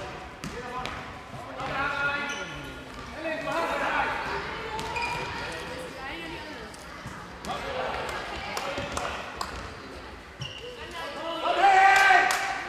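Children shouting and calling during a handball game, with a handball bouncing on the sports hall floor in between. The voices are loudest near the end.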